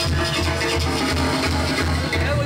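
Live Mexican banda brass band playing, with a sousaphone bass line pulsing evenly under the horns and percussion.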